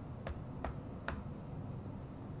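Computer keyboard typing: three separate keystrokes, a little under half a second apart, as the letters of a short word are typed.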